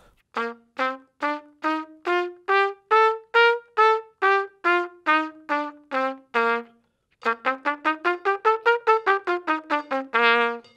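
Trumpet playing a major scale in separate, evenly spaced notes at 70 beats per minute, about two notes to the beat. It climbs an octave and comes back down. After a short break about seven seconds in, the same scale runs up and down again about twice as fast.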